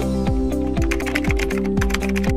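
Computer-keyboard typing sound effect, a rapid run of key clicks over electronic background music with a steady beat.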